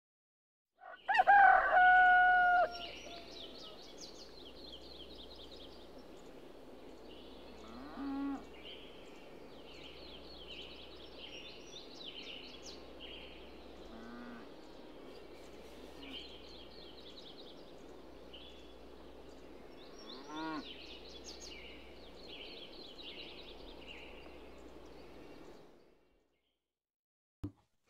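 A rooster crows once, loudly, about a second in. Small birds then chirp steadily throughout, with a few fainter fowl calls scattered through the rest.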